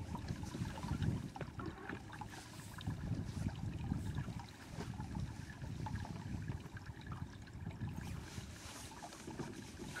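Water lapping and sloshing irregularly against the hull of a small fishing boat, with scattered faint ticks.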